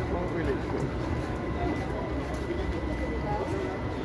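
Indistinct chatter of people at a busy fish market over a steady low rumble of outdoor background noise.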